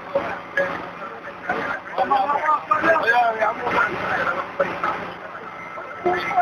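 Indistinct voices of people talking, loudest and busiest in the middle, over a steady background rush of noise.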